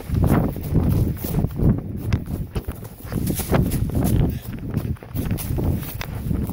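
Running footsteps on grass and earth: a quick, uneven run of dull thuds about two a second, with the phone microphone knocked about by the running.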